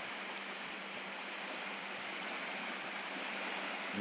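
Small waves washing steadily onto a sandy beach, an even wash of water with no distinct splashes.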